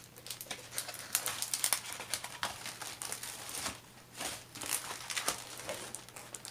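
Diamond painting canvas with its glossy plastic cover film crinkling as it is unrolled and flattened by hand: a steady run of irregular crackles and rustles.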